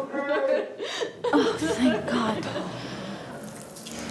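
Wordless human vocal sounds: several short, pitched, emotional vocalisations packed into the first two and a half seconds, then quieter.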